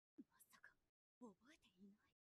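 Near silence, with a few faint snatches of speech: anime character dialogue playing at very low volume.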